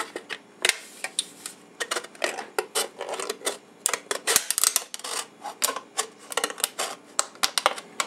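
Scissors cutting through the thin aluminium wall of an energy-drink can: an irregular run of crisp clicking snips, several a second.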